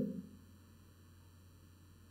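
Faint steady low electrical hum on an otherwise near-silent recording, after the tail of a spoken word fades out just at the start.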